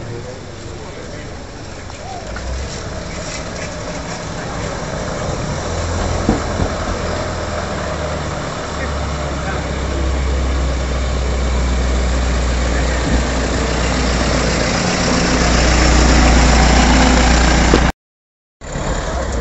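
Engine of a vintage flatbed truck running as it drives up the street toward the microphone, a low steady rumble that grows louder as it nears, before the sound cuts off at the very end.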